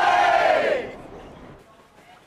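A crowd of voices shouting together in one loud cheer, rising and falling over about a second before fading away.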